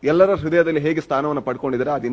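A man speaking into a microphone, talking continuously with short pauses between phrases.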